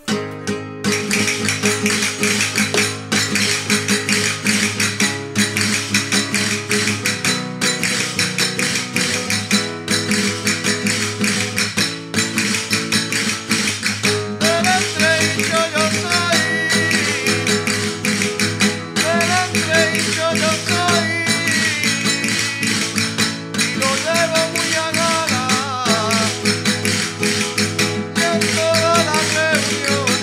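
Chacarra, a traditional Andalusian folk dance tune, starts suddenly: guitar with a steady percussive beat. A melody line comes in about halfway through, in short phrases with gaps between them.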